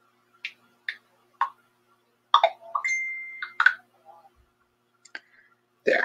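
A few short, separate clicks, then a quick cluster of clicks with a steady beep held for nearly a second, then a couple more faint clicks, over a faint steady hum.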